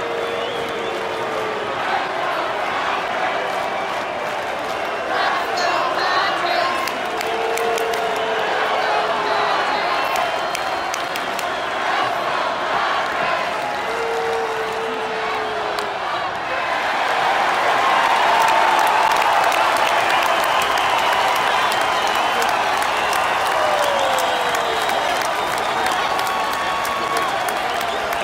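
Baseball stadium crowd: a mass of voices and scattered clapping from the stands, swelling into louder cheering about two-thirds of the way through and staying up.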